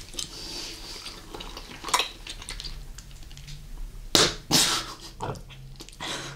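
Close-miked mouth sounds of chewing bubble gum and candy: wet clicks and smacks, with a few louder sharp snaps about two seconds in and again just past four seconds.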